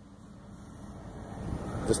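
Faint low hum of the 1985 Buick LeSabre's 307 Oldsmobile V8 idling, swelling gradually over the two seconds.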